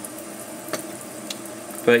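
Rinse water trickling slowly out of the corner of a tilted perforated plastic sprouting tray into a sink, a steady soft patter with a couple of faint drips.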